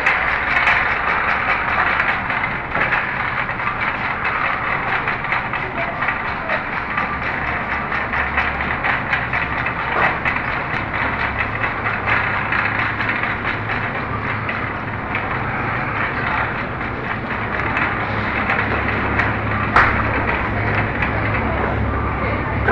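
Shopping cart rolling over a store floor, its wheels and frame rattling steadily with many small clicks and a low hum underneath, and one sharp click near the end.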